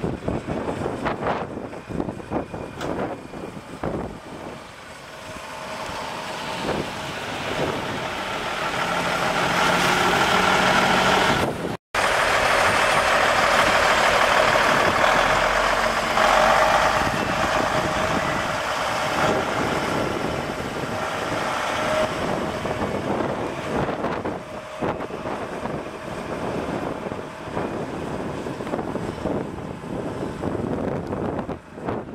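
The Cummins N14 inline-six diesel of a 1998 Kenworth T800 semi tractor running. It grows louder over several seconds as the truck comes closer. After a sudden break it is heard close and loud, then eases a little.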